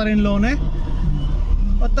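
Steady low rumble of a car's engine and road noise, heard inside the cabin.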